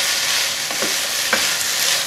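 Chicken and vegetables sizzling in a frying pan as they are stirred with a wooden spoon: a steady frying hiss with a few short clicks from the stirring.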